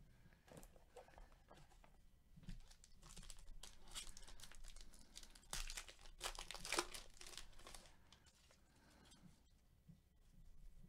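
A Topps Gypsy Queen trading-card pack wrapper being torn open and crinkled by gloved hands. The tearing and crinkling are loudest about five to seven seconds in.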